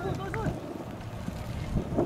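Distant voices calling out across a soccer field, mostly in the first half-second, over a steady low rumble of wind on the microphone.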